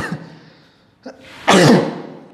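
A man's voice making short, loud sounds with falling pitch: one right at the start and a stronger one about one and a half seconds in.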